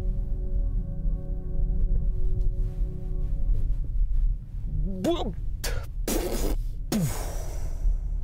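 Ambient electronic music from the BMW i7's sound mode playing through the cabin speakers: several held tones over a low rumble. The tones fade out about halfway through, and a man's voice follows with a couple of short vocal sounds and breathy exhales.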